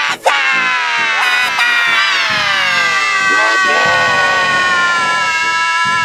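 A cartoon character's voice, held for nearly six seconds and slowly falling in pitch, layered through pitch-shifting effects so that it sounds like a sustained chord.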